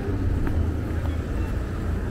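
City street traffic: a steady low rumble of vehicle engines and tyres, with a few faint ticks.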